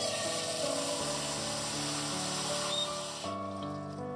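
Water poured from an aluminium saucepan through a mesh strainer of taro into a stainless steel sink: a steady rush of water that stops about three seconds in.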